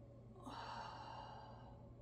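A woman's long breathy exhale, a sigh that starts about half a second in and fades after just over a second, as she breathes out with the effort of a yoga leg lift. A faint steady hum lies underneath.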